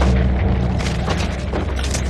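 Deep, steady rumble of a fire burning through a building, with crackling and a few rushing flare-ups about once a second.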